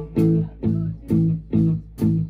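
Live band music with no singing: electric guitars and bass hitting short chords a little over twice a second, each chord dying away before the next.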